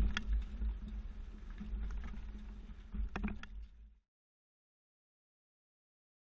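A vehicle creeping over speed bumps with a low road-and-engine rumble, while the hitch-mounted platform bike rack and the mountain bike on it knock and rattle a few times as it rocks up and down. The sound cuts off suddenly about four seconds in.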